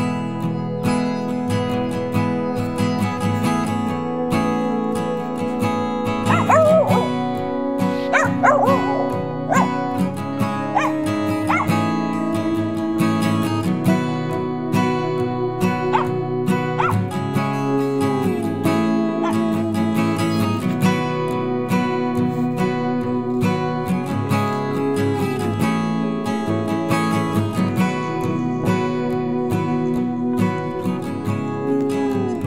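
Acoustic guitar music plays steadily throughout. A village dog gives several short calls that rise and fall in pitch, bunched between about a fifth and two-fifths of the way in.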